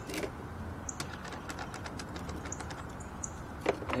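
Steel sockets clicking and clinking against each other and the plastic case as a hand sorts through a socket set: a run of light, irregular clicks, with a louder click just after the start and another near the end.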